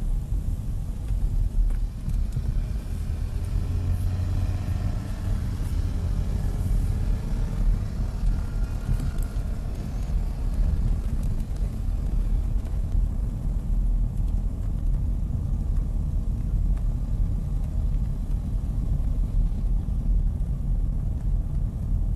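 Steady low rumble of a moving car heard from inside the cabin: engine and road noise with no sudden events.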